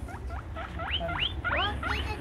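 Guinea pigs wheeking: a run of short squeals, each sweeping sharply upward in pitch, about three a second.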